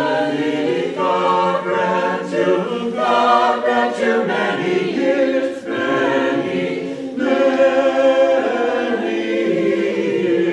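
Small mixed Orthodox church choir of men and women singing a cappella in parts.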